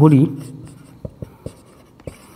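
Marker pen writing on a whiteboard: faint scratching strokes, with four short taps in the second second as the marker tip meets the board.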